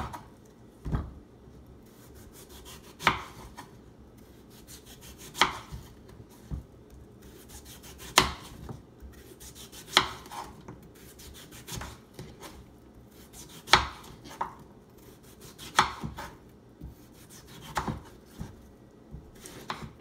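Kitchen knife cutting a cantaloupe into wedges on a wooden cutting board, the blade knocking sharply against the board every two to three seconds as each cut goes through, with quieter scraping of rind and knife in between.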